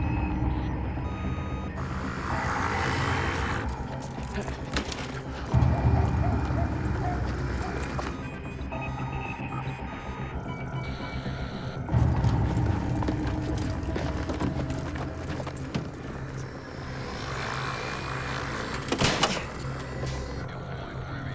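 Tense film score built on deep bass swells that surge about every six seconds, overlaid with bursts of high electronic bleeps from a targeting display.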